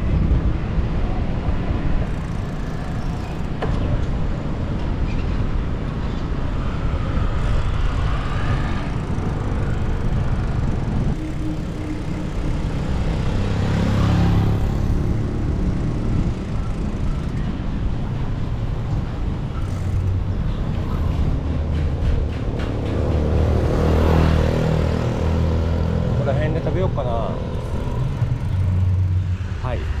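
Street traffic heard from a moving bicycle: a steady low rumble with cars and motorbikes passing, the loudest passes about halfway through and again later on.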